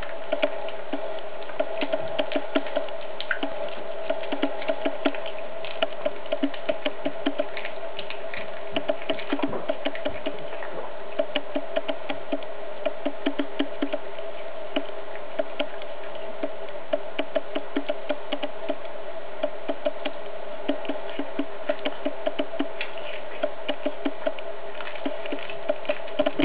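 Cat chewing a whole raw chick, bones and all: quick runs of sharp clicking bites, several a second, with short pauses between runs. A steady low hum runs underneath.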